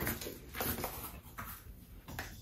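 Faint handling noises: a few light knocks and rustles as packing material is taken out of a new air fryer.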